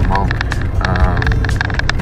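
Steady low rumble of a pickup truck running, heard inside the cab, with small clicks and rattles, and a man's brief hesitant vocal sounds near the start and about a second in.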